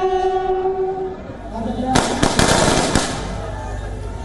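A military bugle holds its last note, which ends about a second in. About two seconds in comes a ragged rifle volley of a funeral gun salute, several shots close together over about a second, followed by a low steady rumble.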